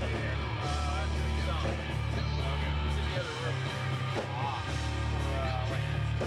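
A noise-rock band playing live and loud: heavily distorted bass guitar holding sustained low notes under electric guitar and drums, with wavering, bending tones in the midrange.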